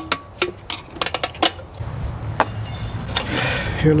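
Sharp metallic clicks and clinks, several spread over the first two and a half seconds, as a steel pick works a snap ring out of a CVT transmission case. Near the end comes a short scraping rattle as the piston's return spring pack is lifted out.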